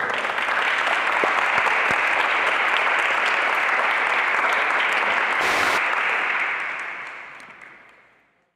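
Audience applauding with steady, dense clapping that fades out near the end.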